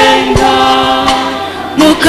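Church choir singing a Luganda worship song, holding a long chord that fades away over about a second and a half; singing comes back in near the end.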